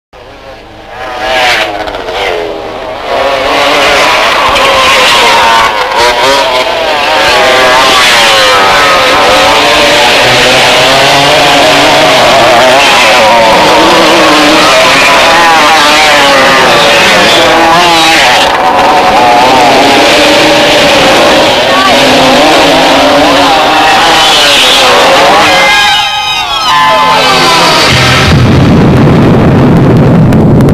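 Several motocross dirt bikes revving as they ride, their engine pitch constantly rising and falling. Near the end there is a quick falling sweep, then a low rumble.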